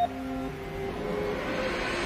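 Quiet opening of a rap track's instrumental: a few faint held notes under a swell of noise that rises steadily, building toward the beat.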